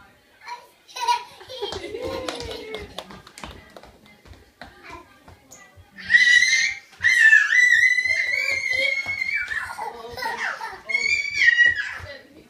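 A toddler singing a made-up song in a very high, drawn-out voice, starting about halfway through, after a stretch of small children's babbling and light knocks.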